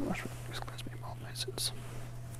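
A priest whispering a short prayer, with soft hissing consonants, over a steady low hum.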